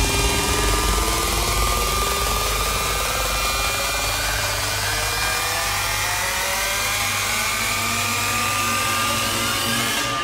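Hardstyle track in a beatless build-up: a synth riser climbs slowly in pitch over a held low bass tone, with no kick drum.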